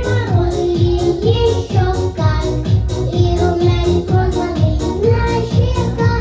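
A group of young children singing a song into handheld microphones over a recorded backing track with a steady beat.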